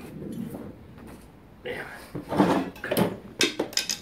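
Close handling noise: rustling and shuffling in the second half, then a few sharp clicks or knocks near the end, mixed with some indistinct voice sounds.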